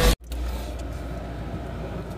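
Intro music cuts off just after the start, then after a brief dropout a steady low hum with a faint hiss runs on.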